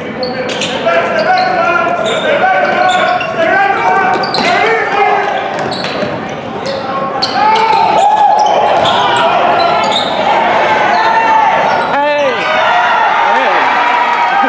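Basketball game in a large gym: a basketball bouncing on the hardwood court, with voices of players and spectators ringing through the hall. Short squeals that come thicker in the second half fit sneakers squeaking on the floor.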